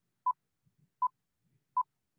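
Stop Motion Studio app's voiceover-recording countdown on an iPad: three short beeps of one pitch, evenly spaced about three-quarters of a second apart, counting down to the start of recording.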